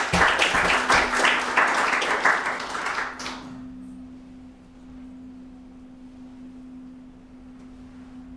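Audience applauding for about three seconds and then stopping abruptly, leaving a steady low hum in the room.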